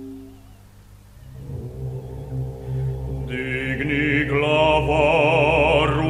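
Choral music with a chamber ensemble: a held note fades out, then about a second in a low sustained drone begins. Singing voices with a wide vibrato come in past the halfway point and swell louder.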